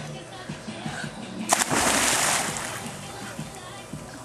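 A small child jumping off the side into a swimming pool: one sudden splash about a second and a half in, followed by about a second of churning water as she starts to swim.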